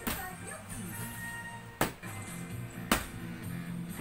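Plastic water bottle being flipped and knocking down onto a vinyl-covered floor: three sharp knocks, near the start, just under two seconds in and about three seconds in. Music plays underneath.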